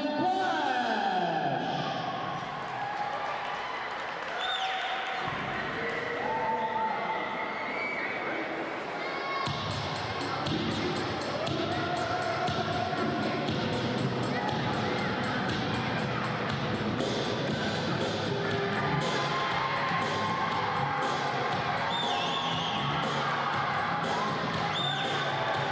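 Repeated thuds echoing in a large gymnasium, with voices and music behind them. The thuds come much more often from about ten seconds in.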